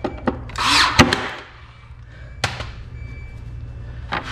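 Cordless nail gun firing nails through thin wooden stays into an MDF frame: a few sharp shots, the loudest about a second in after a short rush, and another about two and a half seconds in.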